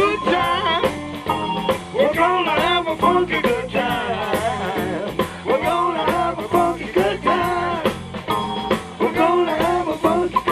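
Live funk band playing: saxophone section, electric guitar, keyboard and a steady drum beat, with a singer.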